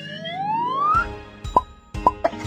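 Cartoon sound effects over music: a whistle-like tone gliding steadily upward for about a second, then a beat starting and a short pop about one and a half seconds in.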